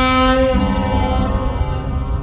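Dramatic background music: a held, horn-like synthesizer chord that steps down in pitch about half a second in, over a low rumble.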